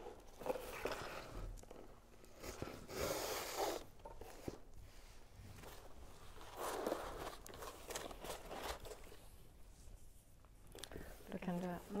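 Corrugated cardboard rustling and scraping as a cord is pulled through holes in it and the package is handled, in a few separate bursts, the longest about three seconds in.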